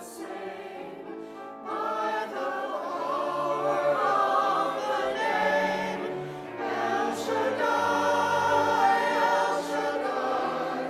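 Mixed-voice church choir singing a choral anthem; the singing grows louder about two seconds in.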